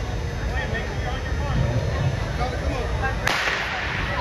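A starting gun fires once, about three seconds in, starting a 60 m sprint heat: a single sharp crack that rings on in the hall's reverberation. Before the shot there is a steady murmur of crowd chatter.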